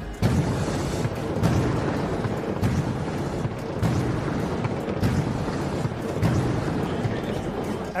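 Pirate-ship cannons firing a touchdown volley: propane-oxygen concussion cannons booming and CO2 smoke cannons blasting. The first blast comes just after the start, followed by a run of booms a little over a second apart over a continuous rumble.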